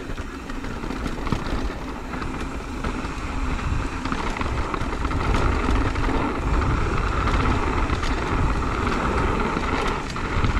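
Mountain bike rolling quickly down a dirt trail: wind rushing over the camera's microphone and tyres on dirt, with scattered clicks and rattles. It grows louder as speed builds.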